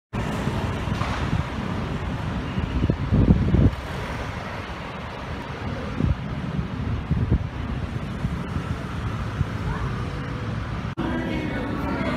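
Outdoor street noise: a steady low rumble of road traffic, swelling louder for a moment about three seconds in and briefly again around six and seven seconds.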